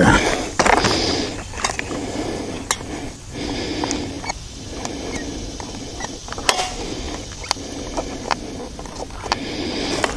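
Scattered clicks and knocks over rustling as a chainsaw is handled, its engine not running.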